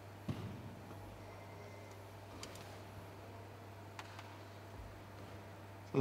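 Quiet room tone with a steady low hum, a soft knock just after the start and a few faint clicks later.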